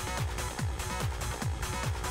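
Hard techno track played from vinyl through a DJ mixer: a deep kick drum that drops in pitch on each beat, about two beats a second, under a dense layer of higher synth and percussion sounds.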